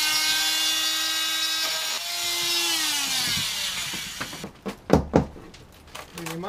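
Handheld power tool cutting curves in a wooden boat bulkhead, its motor running at a steady high pitch. The tool stops briefly just before two seconds in, then starts again and winds down in pitch after about three seconds. A few sharp knocks follow near five seconds.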